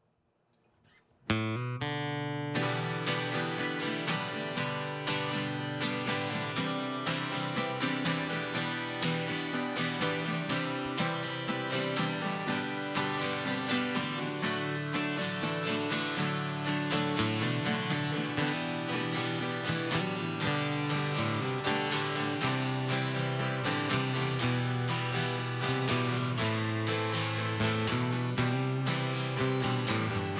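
Three acoustic guitars strumming and picking an instrumental song intro, starting about a second in after near silence.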